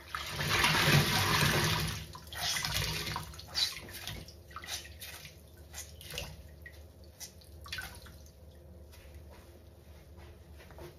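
Water-soaked foam sponge squeezed and wrung in soapy water. Water gushes out loudly for about two seconds, then come shorter wet squelches and crackling suds that grow quieter toward the end.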